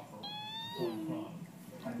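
A short, high-pitched mewing squeak, held level for about half a second and then falling away, followed by a brief lower note. It stands in for a turtle's sneeze.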